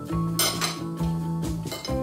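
Metal cutlery scraping and clinking against a plate, with the loudest clatter about half a second in. Background music plays throughout.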